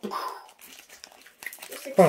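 Plastic snack packaging crinkling and crackling as it is handled, in a string of small irregular crackles, with a voice cutting in right at the end.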